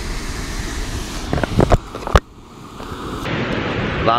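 Wind and surf noise on the microphone, with a few plastic clicks about one and a half seconds in and a sharp snap just after two seconds: an action camera's clear plastic waterproof housing being handled and clipped shut.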